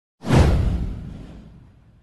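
A whoosh sound effect with a deep low boom, starting suddenly about a quarter second in, falling in pitch and dying away over about a second and a half.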